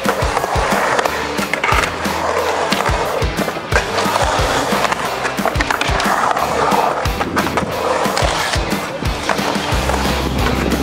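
Skateboard wheels rolling on a concrete bowl and full pipe, the rolling noise rising and falling in waves as the rider carves through the transitions, with scattered sharp clicks from the board. Music plays underneath.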